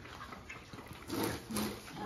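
Kunekune pigs eating green leaves off a concrete floor: faint chewing and rooting noises, louder for a moment just after a second in.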